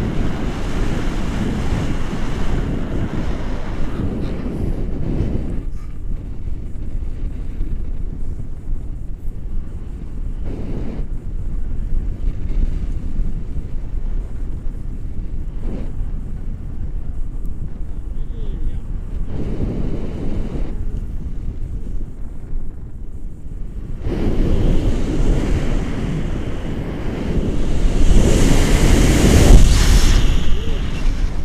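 Airflow buffeting the microphone of a camera on a tandem paraglider in flight, a rushing noise that surges and eases in gusts. It drops lower through the middle and grows louder over the last several seconds as the glider banks into a turn.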